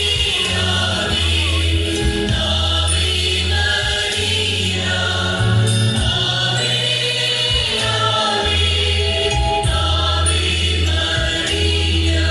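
Choral music: voices singing together over held low bass notes that change every second or two.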